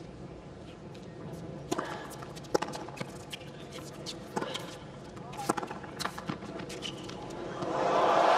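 Tennis rally: sharp racket-on-ball strikes and ball bounces on the court, spaced irregularly about a second apart, over a steady crowd murmur. Near the end the crowd breaks into loud cheering and applause at the winning shot.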